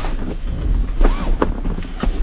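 Low wind rumble on the microphone, with a few faint knocks and a brief faint voice about a second in.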